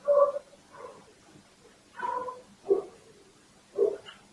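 An animal's short, high-pitched calls, five in all, spaced unevenly over about four seconds.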